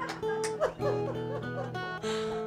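Plugged-in acoustic guitar being picked, a few notes and chords struck and left ringing.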